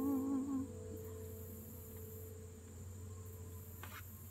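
The last sung note, held with a wavering vibrato over a ringing acoustic guitar, fades out about half a second in. After that, a steady low hum and a high-pitched insect buzz that swells and drops away in pulses of a second or so.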